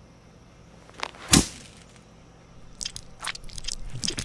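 Saltine crackers crunching: two sharp, loud crunches about a second in, then a run of quieter crackles near the end, over a low room hum.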